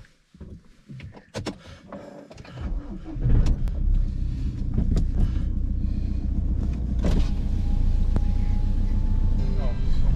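A car's engine starting about three seconds in and then running with a steady low rumble, heard from inside the cabin, after a few clicks and knocks.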